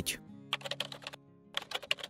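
Computer keyboard typing sound effect: two quick runs of key clicks with a short pause between them, over faint background music.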